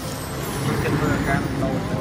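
Street noise: a motor vehicle running close by, with people talking in the background about halfway through.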